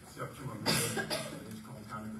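Someone coughing, two sharp bursts about half a second apart, over quiet talk in the room.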